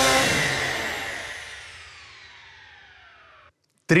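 Programme ident sting: a sudden hit with a cluster of tones that slide slowly down in pitch as they fade. It cuts off about three and a half seconds in.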